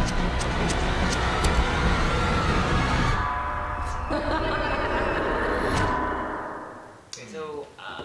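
Film trailer sound design and score: a sudden loud hit with a deep rumble and drawn-out tones under it, fading away about six to seven seconds in.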